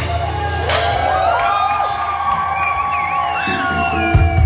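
Live band music in a short breakdown: the bass and drums drop out, leaving held notes with sliding higher lines over them, and a single sharp hit comes under a second in.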